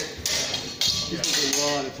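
Steel practice swords and bucklers clashing in sword-and-buckler sparring: about three quick metallic clashes with a ringing edge, and a man's voice briefly near the end.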